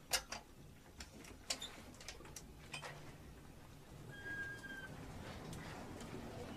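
Scattered light clicks and clinks of kitchen objects and hanging utensils rattling as a house shakes in an earthquake, thickest in the first three seconds. A short, thin high tone sounds about four seconds in.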